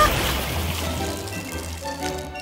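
Water spurting and splattering out of a squeezed plastic water bottle, loudest at the start and fading away within about a second.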